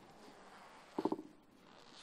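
A single short, low, rattling throat sound from a person at a close microphone about a second in, otherwise faint room tone.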